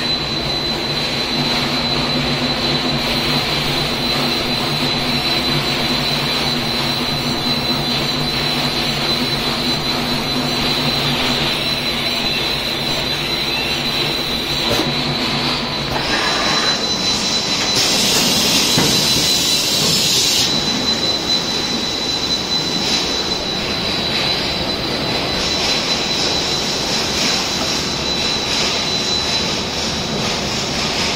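PCB laser marking machine and its production line running: a steady mechanical noise with a constant high-pitched whine. A low hum under it stops about halfway, and a louder hiss comes in briefly about two-thirds of the way through.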